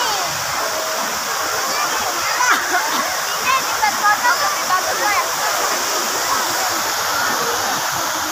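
Steady rush of a large multi-jet fountain, its many water jets spraying up and falling back into the pool, with a crowd of people talking over it.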